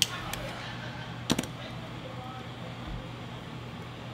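A steady low hum of room ventilation, broken by two sharp clicks, one right at the start and another about a second and a half later.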